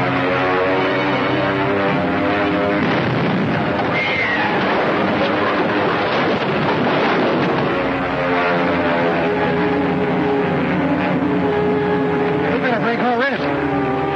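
Orchestral film-score music, broken about three seconds in by several seconds of loud rushing noise, an aircraft-dive and bomb-blast sound effect. The music then resumes.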